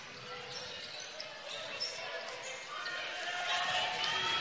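Basketball gym ambience during live play: a basketball bouncing on the hardwood floor under a steady crowd murmur, with voices rising in the last second.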